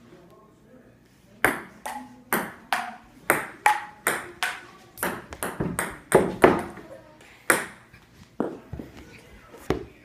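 Table tennis rally: a plastic ping pong ball clicking off paddles and the table in a quick back-and-forth run of two to three hits a second. It starts about a second and a half in and stops near the end.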